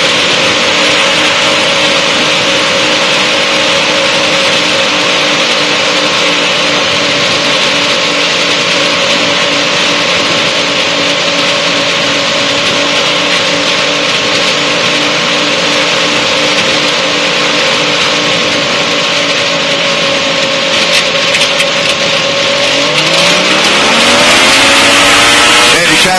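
Liquid-cooled engine of a Challenger light-sport aircraft running at low power on approach, a steady drone with wind rushing past. About 22 seconds in it is throttled up and its pitch rises and grows louder.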